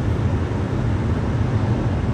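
Steady road noise inside a moving car's cabin: a low, even engine and tyre drone with a fainter hiss above it.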